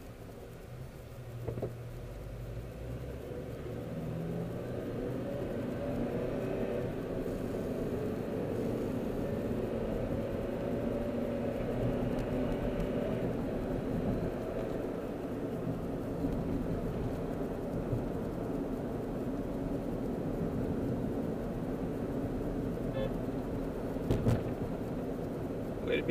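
Car interior: engine and road rumble as the car is driven, growing louder over the first several seconds as it gathers speed, then holding steady.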